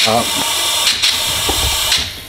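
Compressed air hissing steadily as it is pushed in to pressurise the intake pipework for a boost leak test, with the dump valve leaking; the hiss cuts off sharply near the end.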